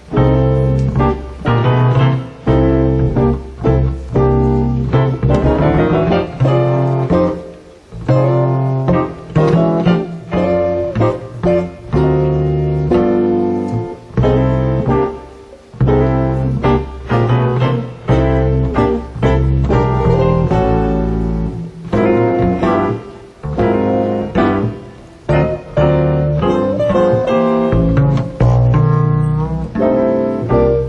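Live jazz trio of piano, acoustic double bass and guitar playing an up-tempo tune, piano to the fore over a walking bass line.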